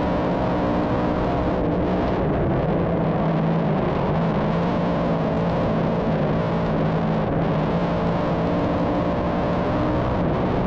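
Big-block dirt modified's V8 engine running hard at racing speed, heard from inside the cockpit: a loud, steady drone whose pitch holds nearly level.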